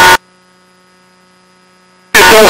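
A faint steady hum with a few held tones, after a loud passage cuts off abruptly just after the start.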